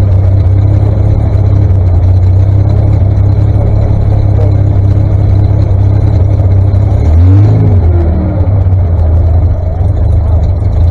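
The 1959 Daimler Ferret armoured scout car's Rolls-Royce B60 six-cylinder petrol engine idling steadily, with a brief rev about seven seconds in that rises and falls back to idle.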